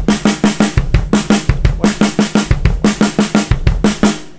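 Acoustic drum kit playing a steady run of sixteenth notes: two bass drum kicks followed by four alternating right-left stick strokes, grouped six, six and four (K K R L R L, K K R L R L, K K R L), repeated evenly. The playing stops right at the end and the drums ring off.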